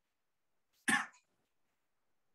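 A single short cough, about a second in.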